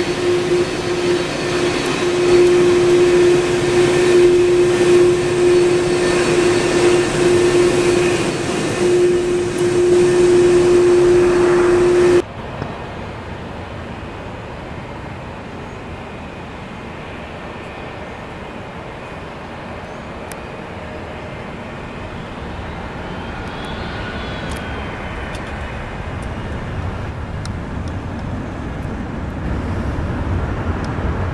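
Jet airliner engines at close range, a loud steady roar with a strong steady hum, cutting off abruptly about twelve seconds in. After that, the quieter, even rumble of a twin-engine MD-80-series airliner on approach, slowly growing louder toward the end.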